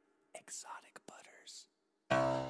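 Near silence, then a whispered voice speaking a short phrase from about a third of a second in, lasting about a second and a half.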